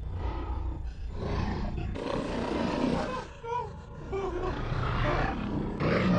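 Zombie snarling and roaring in rasping bursts, louder from about two seconds in, with a few short pitched cries near the middle.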